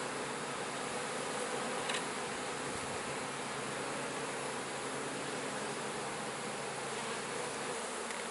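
Honey bees from an open hive buzzing in a steady, continuous hum, with one light click about two seconds in.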